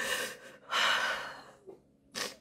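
A woman breathing while crying: two long breaths through the mouth, the second starting just under a second in.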